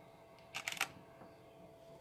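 A quick run of three or four sharp clicks, about half a second in, from a DSLR camera shutter firing in a short burst; otherwise a quiet room.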